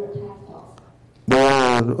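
Speech: after a quiet pause, a voice starts speaking loudly a little over a second in.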